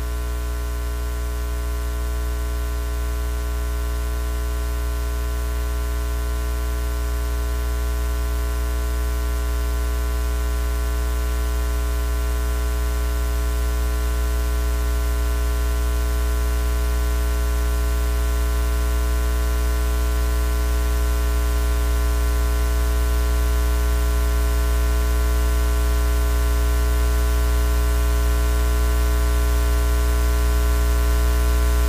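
Steady electrical hum with a buzz of many fixed overtones over a bed of hiss, growing slowly louder and otherwise unchanging: noise on the live audio feed while the program is paused.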